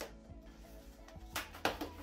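Soft background music plays throughout. From about a second and a half in, cardboard packaging crackles and tears as it is pulled open.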